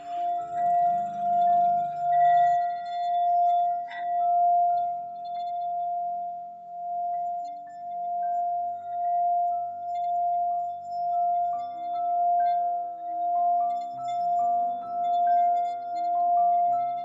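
Metal singing bowl sung by rubbing a wooden stick around its rim: one steady ringing tone that swells and fades about once a second as the stick circles.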